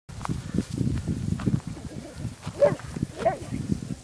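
Rapid low thumps and rustling of footsteps through dry grass, with two short calls about two and a half and three and a quarter seconds in.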